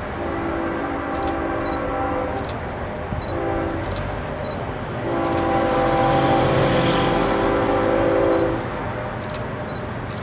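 Distant approaching BNSF diesel locomotive sounding its multi-chime air horn: a long blast, a short blast, then a longer, louder blast, the closing long-short-long of the grade-crossing signal. A low rumble of the train runs underneath.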